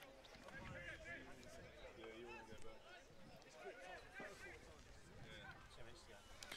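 Near silence, with faint distant voices calling.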